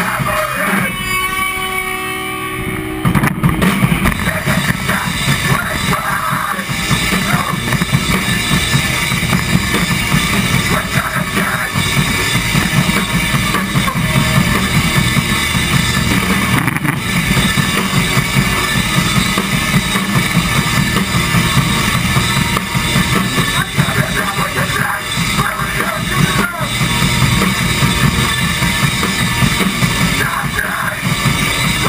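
Melodic hardcore band playing live, with drum kit, distorted electric guitars and bass. The sound thins out briefly near the start, and about three and a half seconds in the full band comes back in and plays on loud.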